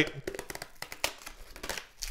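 Faint scattered clicks and light rustling of hands handling sealed trading-card packs on a table.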